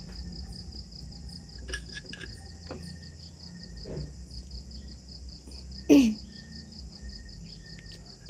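Crickets chirping in a continuous high, rapidly pulsing trill. A single cough cuts in about six seconds in.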